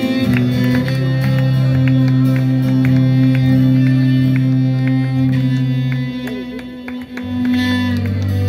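Live folk band playing with fiddle, accordion, sousaphone and strummed strings: long held low notes under quick plucked strumming. About seven seconds in the low note stops and the music dips briefly before a new low note comes in.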